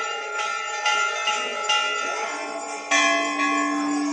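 Hindu temple bells struck by devotees, about four strikes roughly a second apart, each ringing on with several steady tones that overlap.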